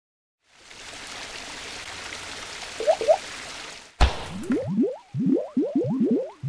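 Animated logo sound effects: a hiss of rushing noise for about three seconds with two quick upward chirps near its end, then a sharp hit and a rapid string of rising bubbly bloops, about four a second.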